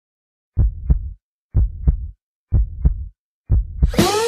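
Heartbeat sound effect used as a song intro: four double thumps (lub-dub), about one per second, with silence between them.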